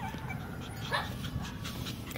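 Shih Tzu puppies giving a few faint whimpers and squeaks, with a short yip about a second in.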